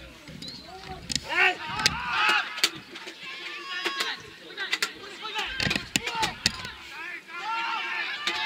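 Players' voices shouting and calling across a football pitch during play: short, drawn-out calls, some high-pitched, with no clear words. Several sharp knocks are mixed in.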